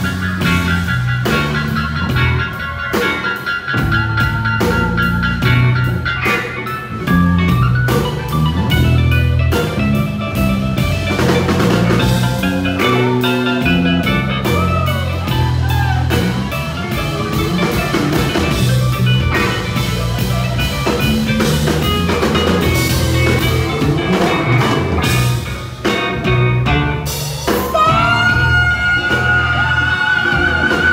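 Live blues-rock band playing an instrumental passage: electric guitar, bass guitar, drum kit and congas with a steady beat. Near the end a singer's voice comes in with a long held note.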